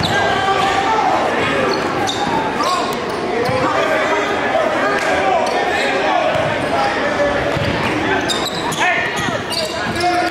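A basketball being dribbled on a hardwood gym floor under the steady noise of a crowd shouting and chattering, all echoing in the hall, with scattered knocks of the ball throughout.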